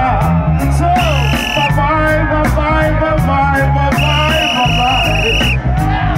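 Live reggae band playing an instrumental stretch: a heavy, repeating bass line under a steady ticking beat. A high held note sounds twice, briefly about a second in and longer about four seconds in.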